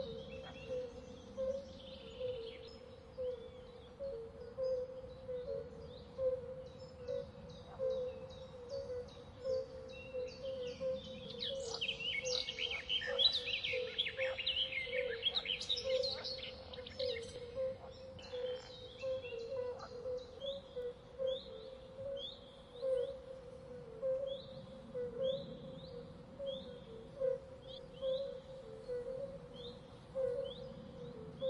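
Outdoor nature ambience with many birds chirping, busiest about halfway through, then a single bird repeating a short chirp about once a second, over a steady droning hum.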